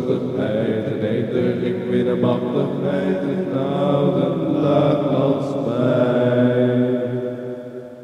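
Music: a slow, droning chant of held low notes with no words, fading out near the end.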